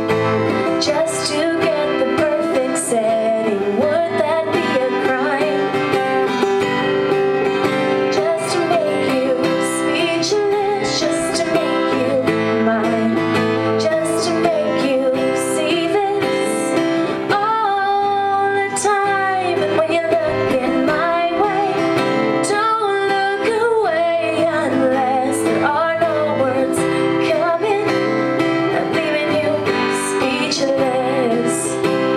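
A woman singing live with a strummed steel-string acoustic guitar, with one long held vocal note a little past the middle.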